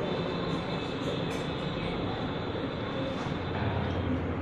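Steady room noise, a low hum and hiss, with faint murmuring voices.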